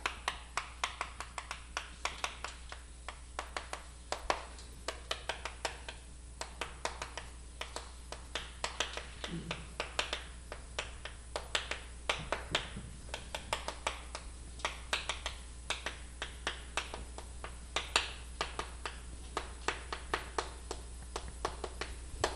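Chalk writing on a chalkboard: a steady run of sharp taps and short scratches, several a second, as the strokes of a formula are written.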